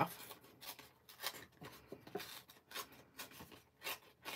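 Pink cardstock being torn by hand along one edge, a strip ripped off in short tugs: a quiet, irregular series of small crackling rips.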